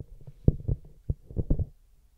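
Handling noise from a handheld microphone as it is lowered: a series of dull low thumps and rubs, the strongest about half a second in and another cluster around a second and a half in, dying away near the end.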